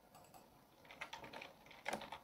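Typing on a computer keyboard: quick runs of keystrokes, the loudest near the end.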